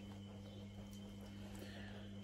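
Quiet room tone: a low, steady hum with no distinct events.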